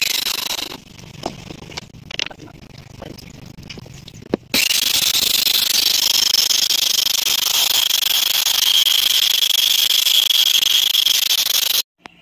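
Handheld electric circular saw cutting a sheet along a straight guide rail: a steady high whine with hiss. It is running at the start and dies away within a second, a few light knocks follow, then it starts abruptly about four and a half seconds in and runs steadily until it cuts off just before the end.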